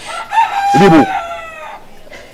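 A rooster crowing once: one long call that holds a steady pitch and then falls away near the end. A short bit of speech overlaps it about a second in.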